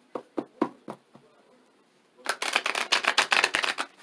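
A deck of tarot cards being shuffled by hand. A few light taps of the cards come in the first second, then a rapid run of card clicks lasts about a second and a half near the end.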